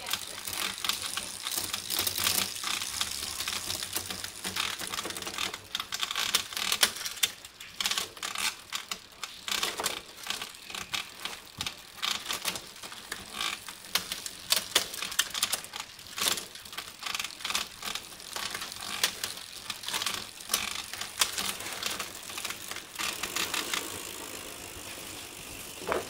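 The drivetrain of an XDS Knight 700 mountain bike, cranked by hand on a stand: the chain runs over the chainrings, cassette and rear derailleur with dense, irregular clicking and rattling, and the rear hub ticks. It eases off and quietens near the end.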